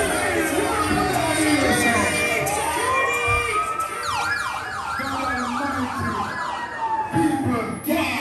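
Crowd voices and shouting, then from about three seconds in a siren wail over the sound system: one long rising sweep, then a fast yelp of about three sweeps a second. It cuts off suddenly just before the music comes back in.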